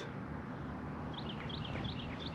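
A small bird chirping, a quick run of short high chirps starting about a second in, over a low steady outdoor background hum.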